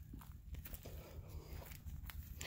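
Faint footsteps in grass, a few soft crunches over a low rumble.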